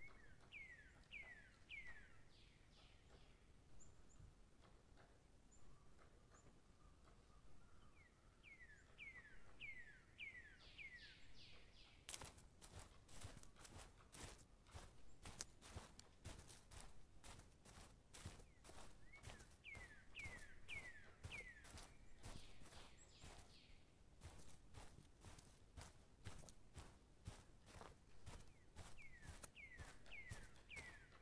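Faint footsteps on a dirt forest trail, starting about twelve seconds in and going on at a steady walking pace. A songbird sings short phrases of several quick falling whistles, four times in all.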